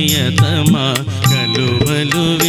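Male vocalist singing a Telugu film song live into a microphone, with a wavering, ornamented melody over instrumental backing and steady percussion.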